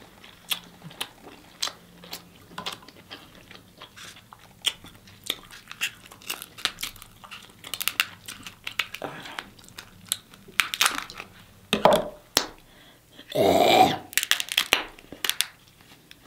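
Close-up eating sounds: crab leg shells cracking and crunching, with chewing and smacking, in many quick sharp clicks. Kitchen shears snip through the shell partway through, and a louder, longer sound comes about three-quarters of the way in.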